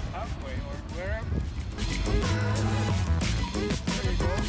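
A voice with gliding pitch, no clear words, then background music from about two seconds in, with held notes over a deep bass.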